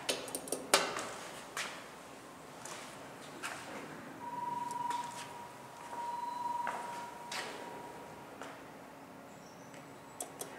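Sharp clicks and knocks as an elevator hall call button is pressed, loudest in the first second. From about four seconds in, a steady high-pitched whine sounds, swells twice and fades out about four seconds later.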